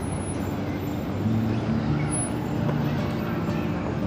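Steady traffic hum, with a low engine drone coming in about a second in, and faint voices.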